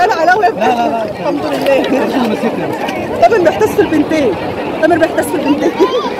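Several people talking at once, their voices overlapping into chatter with no clear words.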